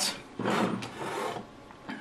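Rough scraping rub lasting about a second: the amplifier's metal chassis being slid and turned on the wooden workbench.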